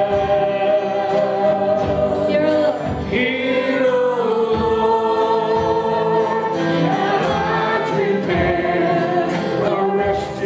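Live worship song: a woman sings the lead into a microphone over acoustic guitar, holding long notes.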